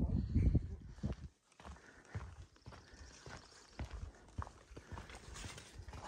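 A hiker's footsteps on the trail: an irregular run of soft knocks, about two a second.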